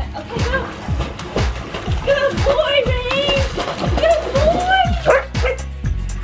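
Background pop music: a singing voice over a steady electronic drum beat.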